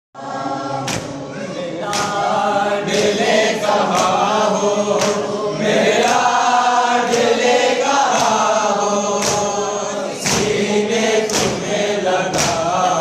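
A group of young male voices chanting a noha, a Shia lament, in unison. Sharp slaps of matam, the hands striking the chest, keep a steady beat about once a second.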